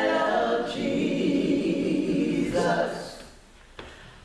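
Three voices, a man and two women, singing a gospel hymn a cappella in harmony. The held phrase fades away about three seconds in, leaving a short pause with a small click near the end.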